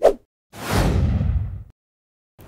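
Editing sound effects for an animated title card: a brief sharp swish at the start, then about half a second in a heavy whoosh with a bang that dies away over about a second.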